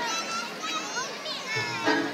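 Children's high-pitched voices calling and shouting in a short break in the loudspeaker music, which comes back in about one and a half seconds in.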